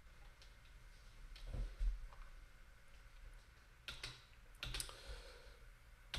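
A few faint computer clicks over quiet room tone, with a soft low thump in the first half and two sharper clicks later, less than a second apart.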